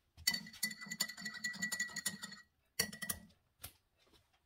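A metal spoon stirring in a ceramic mug, clinking rapidly against the sides with a ringing tone for about two seconds, then a second short burst of stirring.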